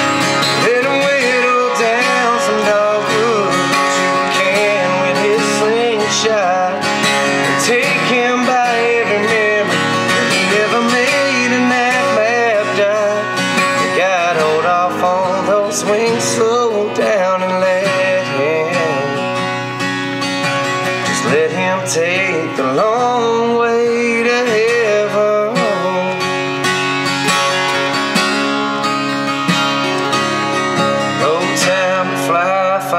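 Acoustic guitar playing a country song, played live, in a stretch between sung lines.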